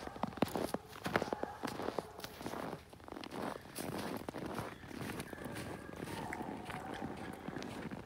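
Footsteps crunching on a packed, snow-covered road: an irregular run of steps.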